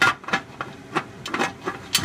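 Metal lid of a pressure canner being twisted onto its pot: a series of short scrapes and knocks, about five in two seconds, as the lid grinds against the rim.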